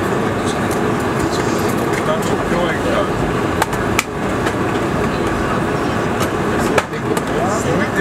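Steady cabin noise inside a Boeing 747-400 airliner as it taxis, with passengers talking indistinctly and a few sharp clicks.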